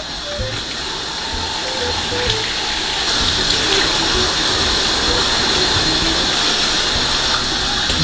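Rainfall shower head running, water spraying steadily onto a tiled shower floor, growing a little louder about three seconds in. A faint melody plays underneath.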